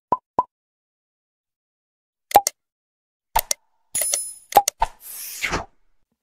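Animated logo intro sound effects: three quick pops, then several pairs of sharp clicks, one with a bright ringing chime, ending in a short falling whoosh.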